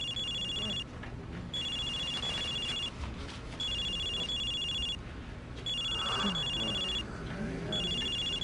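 Cell phone ringing: an electronic ringtone warbling between two high tones, in rings of just over a second about every two seconds, left unanswered.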